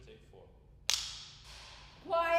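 A film clapperboard's sticks snapping shut once, about a second in: a single sharp clack with a short ring-out after it.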